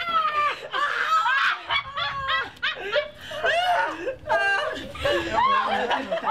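A group of people laughing hard together, several voices overlapping, the laughs rising and falling in pitch.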